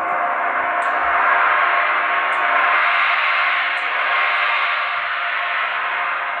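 A large Zildjian gong ringing on after being struck with a soft mallet. Its shimmering tone swells to a peak a second or so in, then slowly dies away.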